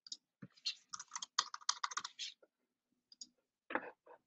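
Typing on a computer keyboard: a quick run of keystrokes in the first half, then a few isolated clicks.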